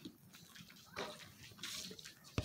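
Faint chewing and wet mouth sounds from a mouthful of bagel sandwich, with a soft smack about a second in and another stretch of chewing near the end.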